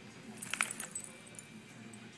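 A puppy's collar tags jingling briefly: a short cluster of light metallic clinks about half a second in.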